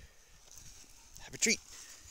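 Quiet outdoor background, then a single short spoken call about one and a half seconds in.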